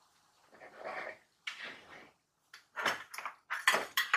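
Hand-twisted spice grinder crunching in short, irregular bursts, coming quicker and sharper in the second half.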